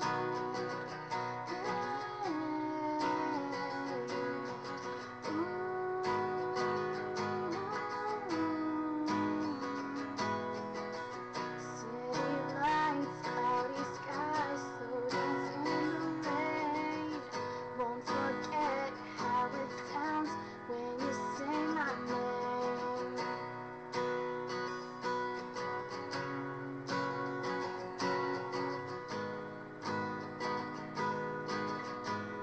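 Acoustic guitar being strummed in a steady rhythm, with a young woman singing the melody over it through the middle of the passage.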